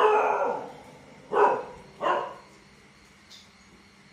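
A dog barking three times: a longer first bark, then two shorter ones about a second and a half and two seconds in.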